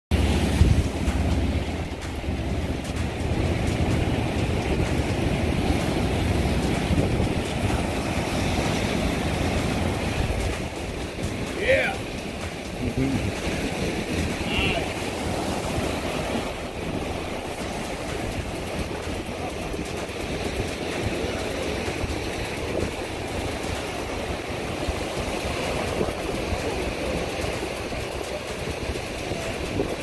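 Rough surf breaking and washing against jetty rocks, a steady rushing with wind buffeting the microphone, heaviest in the first ten seconds or so.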